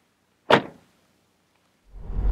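The tailgate of a SEAT Ateca SUV swung down and shut, one short slam about half a second in that dies away quickly.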